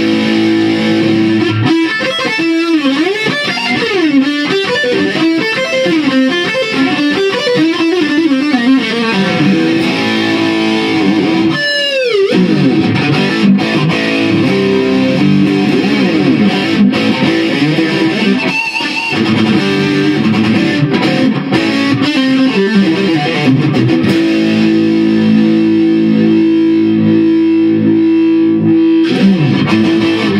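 Distorted electric guitar played with a pick: fast lead lines with string bends, a long downward pitch dive about twelve seconds in, and sustained chords near the end.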